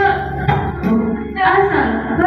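Singing over music, the voices moving between notes in a song.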